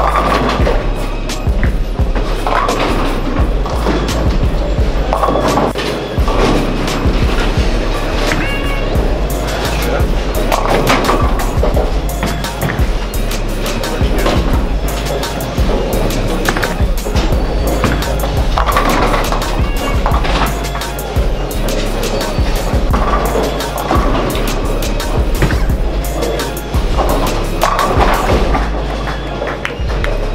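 Background music with a steady beat and a heavy bass line, over bowling-alley sounds of balls rolling down the lanes and pins clattering.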